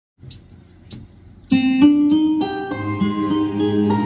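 Two short, sharp clicks, then about a second and a half in a recorded instrumental backing track starts playing loudly through a loudspeaker, its intro moving through several sustained notes. The saxophone is not yet playing.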